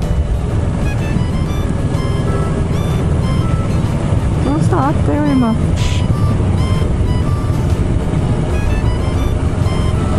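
Kawasaki Ninja 650 parallel-twin motorcycle ridden at road speed: steady low engine and wind rumble on the onboard microphone, under light background music, with a brief voice-like sound about halfway through.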